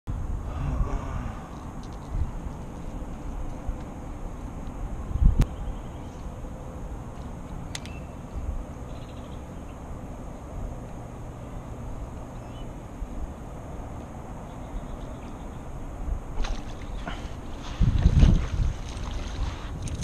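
Low rumbling wind on the microphone with a couple of sharp knocks. In the last few seconds come louder bursts of noise as a hooked bass splashes at the water's surface and is lifted out.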